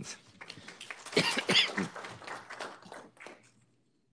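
Brief human vocal sounds without clear words, loudest about a second in and gone by near the end.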